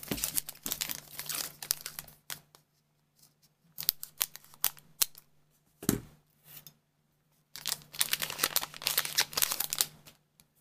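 Trading-card booster pack wrapper crinkling as it is handled, in three bursts. One soft thump comes about six seconds in.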